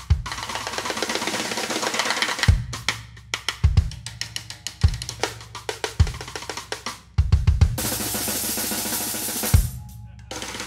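Drum kit groove: a stick laid across the snare clicks out cross-stick strokes over bass drum kicks about once a second. A bright, sustained cymbal-like wash fills the first two seconds and returns for about two seconds near the end.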